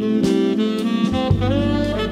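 Jazz with a saxophone playing the melody over bass and drums; the sax line climbs in pitch in the second half.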